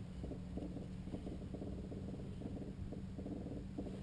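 Light aircraft's piston engine running at idle, a steady low hum with a rapid, even knocking pulse, heard from inside the open cockpit.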